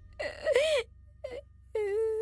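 A person wailing and whimpering: a loud, wavering cry about a quarter of a second in, then a held, quavering whine that starts near the end.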